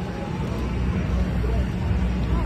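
A vehicle engine idling with a steady low drone that grows a little louder, under background crowd voices.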